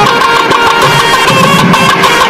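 Nadaswaram ensemble: several double-reed nadaswaram pipes playing a melody in unison over rhythmic strokes of thavil drums.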